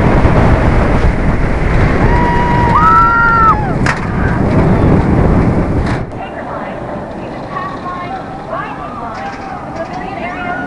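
Wind rushing hard over the microphone of a front-seat rider on a steel roller coaster at speed, with riders letting out a long held scream about two to three and a half seconds in. At about six seconds it cuts to a much quieter ground-level recording with people's voices faintly in the background.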